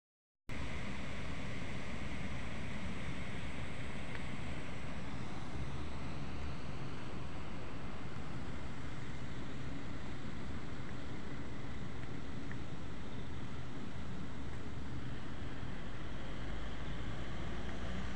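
Steady outdoor noise: wind buffeting the phone's microphone as a low, uneven rumble, over a constant wash of distant city traffic.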